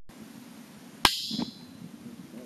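A sharp click about a second in, followed by a brief high ringing, over a low steady hum, heard underwater: a SeaTag Mod tag releasing from its anchor tether in a pool.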